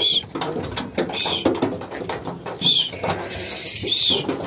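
Sheep moving on wooden boards, their hooves knocking and shuffling. A short high chirp repeats about every second and a half over the shuffling.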